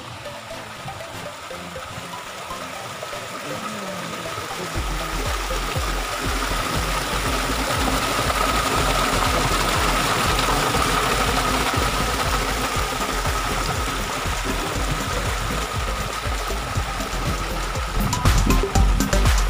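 Pumped well water gushing from a PVC pipe into a concrete basin and rushing out along an irrigation ditch: a steady splashing roar that grows louder over the first several seconds, then holds.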